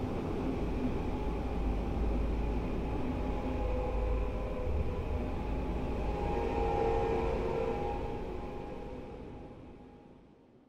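A steady low rumble with a few faint sustained tones above it, fading out over the last two seconds.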